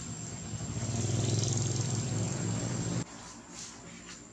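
A motor vehicle engine running steadily in the background, growing louder about a second in, then cutting off abruptly about three seconds in.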